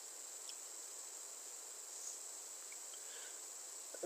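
Faint steady high-pitched hiss with no other clear sound, only a couple of very faint ticks.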